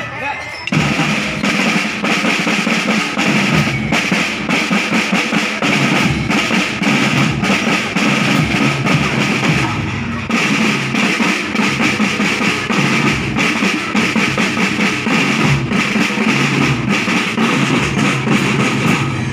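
A children's school drum band playing marching snare drums together in a fast, continuous rhythm, coming in about a second in, with a brief break near the middle.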